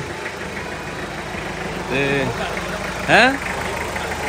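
Open jeep's engine idling steadily with an even low pulse, while a short voice sound comes about two seconds in and a rising vocal call follows just after three seconds.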